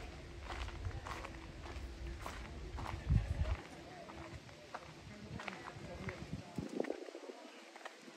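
Footsteps of a person walking on a woodland path, about two a second, over a low rumble. Both fade out about three and a half seconds in as the walker stops.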